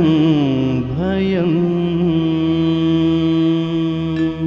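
A singer draws out the final syllable of a sung Telugu verse (padyam) with wavering, bending ornaments. The voice ends about two seconds in, and a steady sustained musical drone holds on after it.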